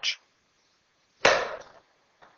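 A golf club striking a ball once, a sharp hit about a second in that fades over about half a second. The shot is topped, the club catching the top of the ball.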